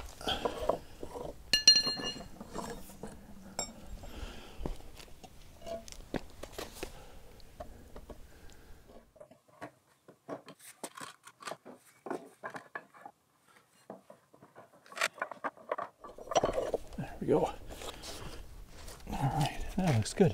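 A concrete garden-box panel being handled and set onto the wooden blocks of a test rig: scattered knocks, taps and scrapes of concrete against wood and concrete, with a brief ringing clink about two seconds in.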